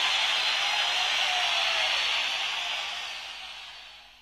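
A steady hiss of noise with no pitch or rhythm, fading out over the last second or so.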